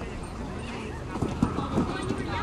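Background voices talking, with a few short knocks a little over a second in.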